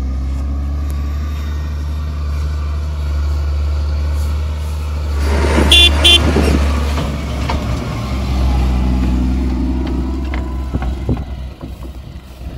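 Fendt 930 Vario tractor's six-cylinder diesel engine running steadily as it pulls a manure spreader along a dirt track, growing louder as it passes about halfway through. Two short horn toots in quick succession about six seconds in.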